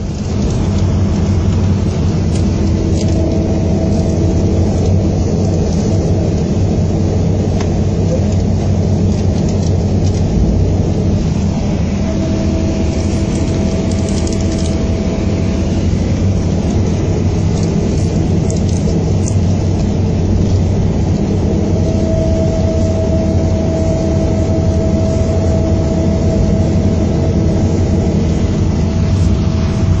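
A Volvo B7R coach heard from inside while under way: its straight-six diesel engine runs steadily over road and body noise. A thin whine comes and goes three times.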